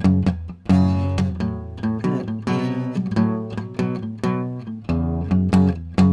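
Steel-string acoustic guitar strummed in a steady rhythm, chords ringing under repeated strokes, back on an F sharp chord.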